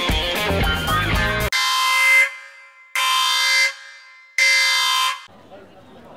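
Music with a beat stops abruptly about a second and a half in. Three loud air-horn blasts follow, each a steady tone lasting under a second, about a second and a half apart and cut off sharply.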